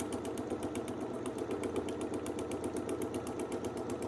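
Domestic sewing machine free-motion stitching through freezer paper and batting, the needle running in a fast, very even rhythm. It is sewn without a stitch regulator, and the steady rhythm is the sign that the hand-controlled stitch length is even.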